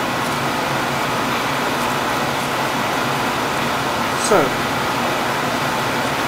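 Steady, even rushing noise of room ventilation or air handling, unchanging in level throughout.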